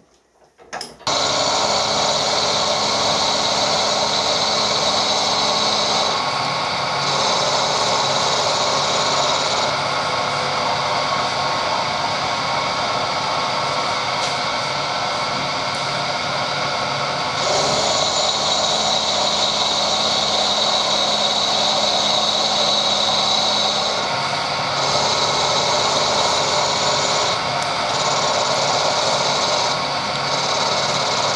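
Vertical milling machine running, its end mill cutting the end of a square steel bar. A steady machine drone runs throughout, and the higher hissing cutting sound drops away several times for a few seconds.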